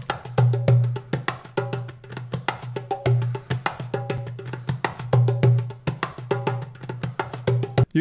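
Percussion bus of a music track playing: a fast run of sharp clicking hand-percussion hits over a recurring low bass note, held together by a bus glue compressor.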